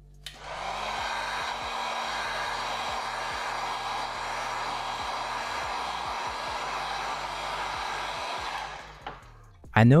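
Electric heat gun running: a steady blow of air over a low motor hum, switched on just after the start and dying away about nine seconds in, used to dry a light coat of paint on shoe leather.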